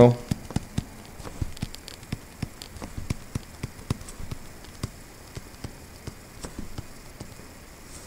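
Stylus tapping and scratching on a tablet screen while writing: a string of light, irregular clicks, several a second.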